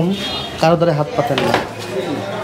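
Light metal clinking of small tools and metal pieces handled at a metalworking bench, with one sharp clink about one and a half seconds in.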